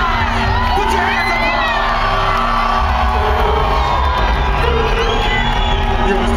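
Concert crowd cheering and screaming over loud live music, with the music's deep bass and held tones running underneath a stream of high rising-and-falling cries.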